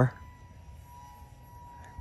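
Faint, steady high whine from the twin 30 mm electric motors of a small RC model plane flying at a distance.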